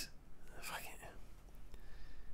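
A quiet pause in a man's talk, with a faint breathy sound and no voiced pitch about half a second to a second in.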